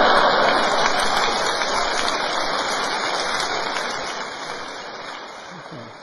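Live audience applauding, loudest at the start and dying away steadily over several seconds.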